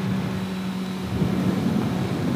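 A 2020 Honda CB650R's inline-four engine running at a steady cruise, its note holding one even pitch, under wind and road noise on a wet road.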